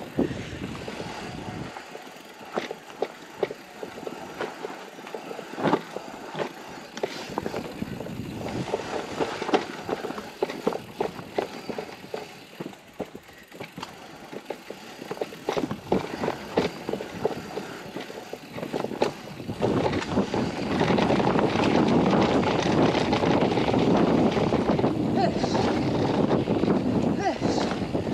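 Electric mountain bike riding down a dirt forest trail: tyre noise on the dirt with frequent rattles and knocks from the bike over roots and bumps. For the last few seconds a louder, steady rush of wind and tyre noise as the speed picks up.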